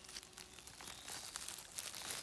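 Faint crackling and rustling of dry pine needles, leaves and soil as a hand digs at the base of a porcini mushroom and works it loose from the forest floor.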